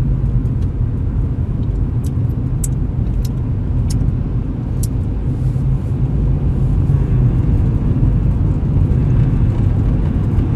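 Inside a moving car, a steady low rumble of engine and tyre noise on the road. A few faint, sharp clicks come in the first half.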